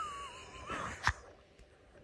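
A man's faint, wheezy squeak of suppressed laughter: a thin, high breathy whine that wavers for about a second, followed by a single click.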